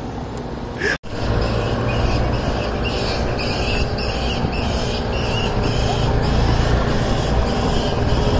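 Outdoor ambience after a brief dropout about a second in: a steady low rumble under a high, rhythmic chirping of about two pulses a second, typical of insects calling in the trees.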